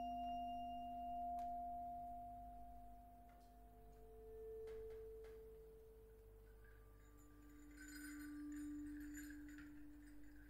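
Metal percussion ringing in sustained, nearly pure tones, each held for several seconds and overlapping the next. A high note fades out by about five seconds as a lower note swells in around four seconds, and a still lower note enters about seven seconds in. A light, glassy metallic jingling starts near seven seconds, with a few soft clicks before it.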